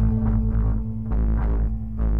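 Stratocaster-style electric guitar playing slow, sparse blues notes: about four picked notes over a sustained low, humming bass drone.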